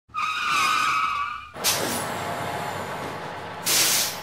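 Vehicle sound effect: a wavering tyre squeal for about a second and a half, then a sudden rush of noise that settles into a steady hiss. Near the end comes a short, loud hiss of air brakes.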